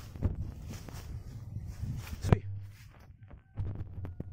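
Footsteps and shuffling on dry leaf litter with a hand-held phone being moved, with one sharp knock a little past halfway.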